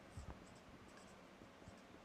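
Dry-erase marker writing on a whiteboard: a series of short, faint squeaky strokes.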